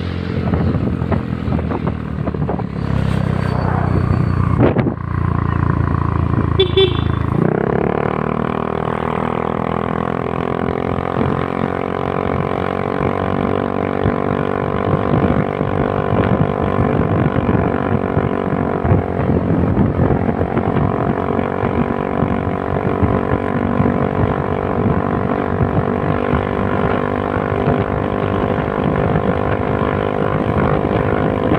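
Motorcycle engine running while riding along a road. A low rushing noise fills the first several seconds; about seven seconds in, the engine note rises and then holds steady at cruising speed.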